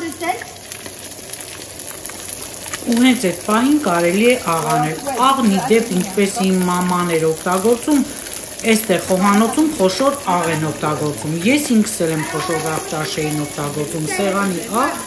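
Fish fillets frying in a hot pan, a steady sizzle. People talk over it from about three seconds in.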